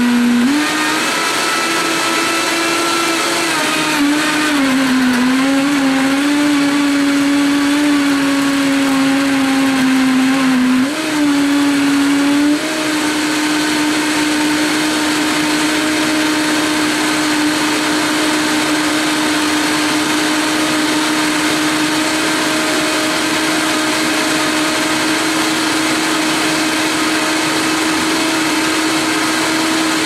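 Vitamix variable-speed blender running loud, its motor pitch jumping up as the speed dial is turned near the start. For the first dozen seconds the tone wavers and dips as the blades work through frozen fruit and ice, then it settles to a steady, even pitch as the mix turns smooth.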